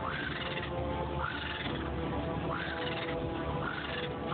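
A bird's call, a short rising-then-falling cry repeated about once a second, over background music with held notes and a low drone.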